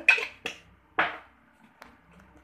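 A few short kitchen sounds as an ingredient goes into oil in a pan, the loudest about a second in, then quieter.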